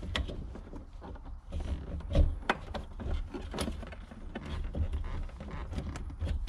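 Hands working the low pressure fuel pump's top hat loose from the fuel tank opening: scattered clicks and knocks, the loudest about two seconds in.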